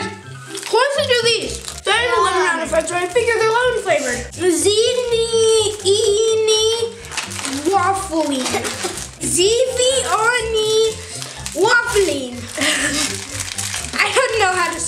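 Children's voices talking and exclaiming over background music with a steady bass line.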